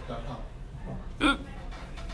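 Faint voices in the room, then one short, loud vocal sound from a person, hiccup-like, about a second in.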